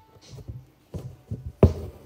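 A handful of dull knocks, the loudest near the end, from the stitching hand keeps hitting soup cans. Quiet background music with a light beat plays under them.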